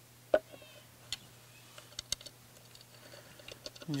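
Scattered light clicks and taps of composite blocks and button-head bolts being handled and fitted against a chainsaw mount. The loudest click comes about a third of a second in, with a few quieter ticks near the end.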